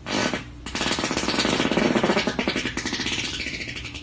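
A man imitating a race car engine with his mouth. A short burst comes first, then a rapidly pulsing vocal buzz that slowly fades toward the end.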